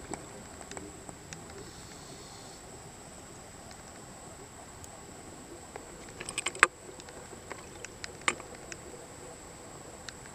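Underwater sound picked up through a camera's waterproof housing: a steady hiss and faint high whine, with scattered sharp clicks and a short burst of louder clicks a little past the middle, and one more sharp click soon after.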